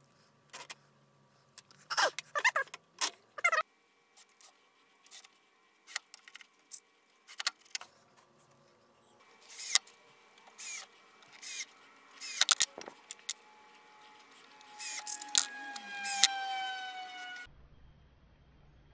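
Cordless drill-driver running in short bursts while driving screws into plywood runners, with small clicks and rattles of screws and parts being handled between the bursts. Near the end comes a longer run whose pitch slowly falls.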